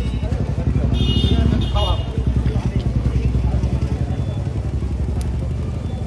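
Street traffic: a continuous low vehicle rumble, with two short high beeps about one to two seconds in and faint voices in the background.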